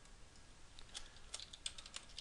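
Faint computer keyboard typing: a quick run of keystrokes starting about a second in, as a short word is typed.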